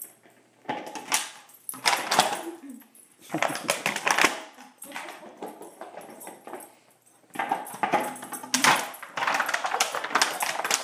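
A dog biting and mouthing an empty 2-liter plastic soda bottle, the thin plastic crackling and crunching in about five bursts with short pauses between.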